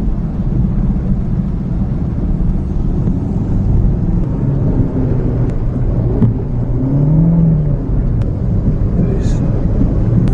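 Vehicles driving through floodwater: a loud, steady low rumble of engines and churned water, with indistinct voices in the background.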